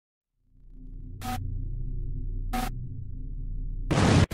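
A low, dark ambient drone fades in and holds steady. Two short bursts of hiss come about a second apart, and a loud burst of noise arrives near the end.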